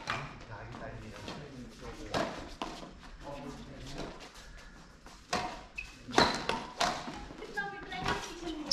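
Badminton rackets striking a shuttlecock in a doubles rally: a sharp smack about two seconds in, then a quick run of hits around six to seven seconds, echoing in a large hall.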